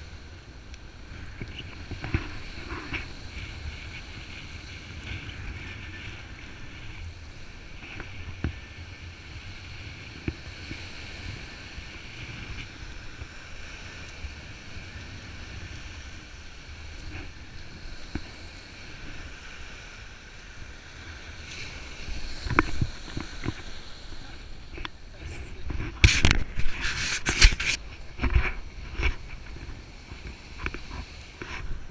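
Small waves washing onto a sandy shore, with wind rumbling on the microphone. In the last several seconds, loud knocks and rustling from the camera being handled.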